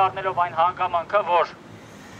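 A man speaking through a handheld megaphone for about a second and a half, then a short pause.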